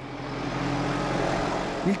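Farm tractor engine running steadily as the tractor drives by, a low hum with a few steady low tones that swells slightly in the middle.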